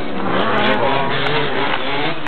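Small two-stroke engines of gas-powered 1/5-scale RC cars running steadily.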